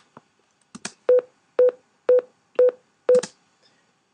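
Final Cut Pro's warning beep playing in place of the unrendered audio of an unconverted iPhone 4 clip. There are five short beeps, a steady tone about half a second apart, and the sound is horrible.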